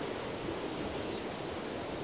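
Steady beach background noise of surf and wind buffeting the microphone, with no distinct events.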